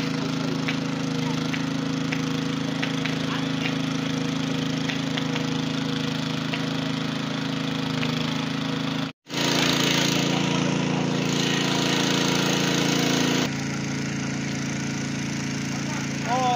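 Engine-driven pump running steadily, feeding a fire hose sprayed onto smouldering rubbish, with scattered sharp crackles in the first half. After a brief dropout about nine seconds in, a louder hiss of spray joins the drone.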